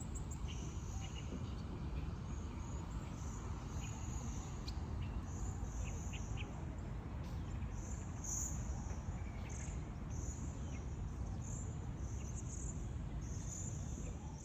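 Insects calling in repeated high-pitched pulses, roughly one a second, over a steady low rumble of outdoor ambience.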